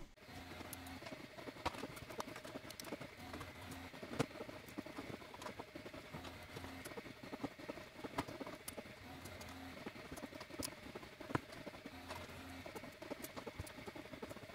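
Plastic keycaps being pulled one after another off the 3D-printed key stems of an HP-86 keyboard. It makes a faint, irregular patter of small clicks and clacks.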